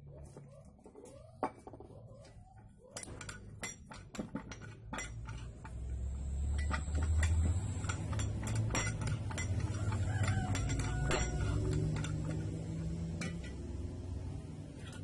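Metal parts of a Canon air rifle (brass barrel and tube) clinking and knocking against each other as they are handled and fitted together by hand, in a run of irregular clicks. From about five seconds in, a steady low rumble rises underneath.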